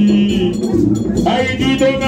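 Music with a group of voices singing. A long held note ends shortly after the start, and the singing comes back in after about a second.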